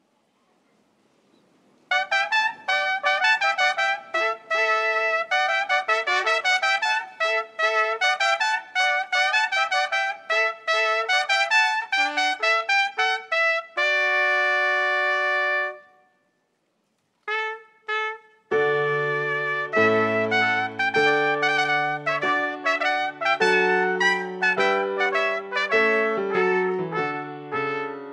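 Trumpet-led brass processional music. After a near-silent start it begins with quick runs of notes about two seconds in, holds a chord, pauses for about a second past the middle, and then resumes fuller, with a low bass line under the melody.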